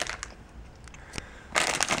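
Plastic gummy bear packet crinkling as it is handled, with a few faint rustles at first and then a loud burst of crinkling about a second and a half in.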